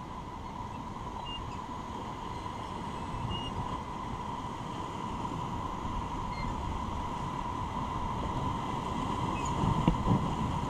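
Rushing river whitewater around an inflatable raft, with wind on the microphone, slowly growing louder as the raft runs into the rapids. A short thump near the end.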